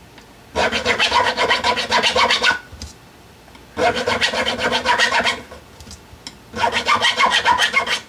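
A file worked rapidly back and forth along the ends of newly installed guitar frets, dressing the fret ends. It comes in three bouts of quick strokes with short pauses between them.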